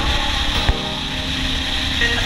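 1984 Honda XL600's single-cylinder engine running at a steady highway cruise with heavy wind rush, the throttle held open by a bungee cord. A single sharp click comes about two-thirds of a second in.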